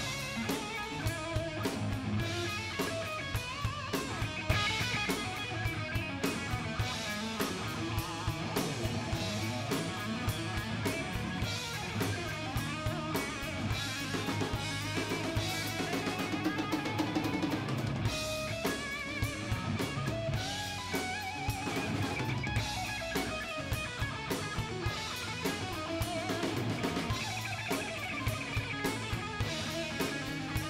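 Live rock band playing: electric guitar over electric bass and a drum kit with a steady beat.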